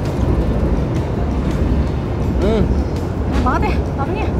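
Steady low rumble of road traffic under faint background music, with a short murmured hum from one of the eaters about two and a half seconds in.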